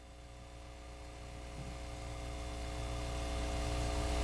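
A low steady hum with several faint held tones above it, slowly growing louder.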